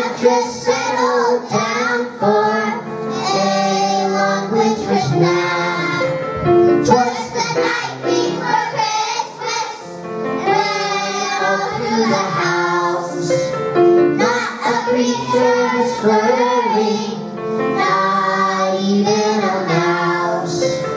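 Children singing a Christmas song, a girl soloist on a microphone with the choir, over musical accompaniment.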